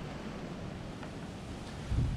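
Steady outdoor noise of wind buffeting the microphone, with a faint click about a second in.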